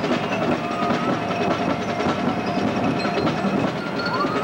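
High school marching band playing, with held chords over drums and percussion.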